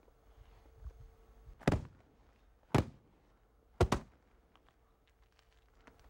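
Foley hit effects: objects struck by hand, three short sharp knocks about a second apart, the third a quick double.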